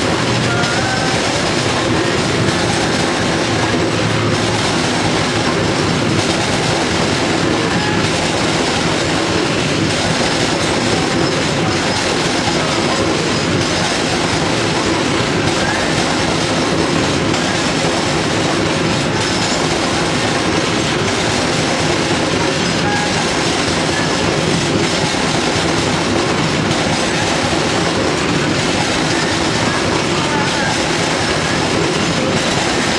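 Open-top freight wagons rolling past close by at speed: a steady, loud rumble of wheels on rail with clickety-clack over the rail joints and a few brief, faint wheel squeals.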